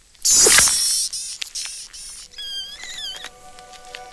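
A fly buzzing loudly and close for under a second, followed by a few short high squeaks that fall in pitch.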